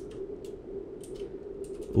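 A few keystrokes on a computer keyboard, typed as short light clicks about halfway through and again near the end.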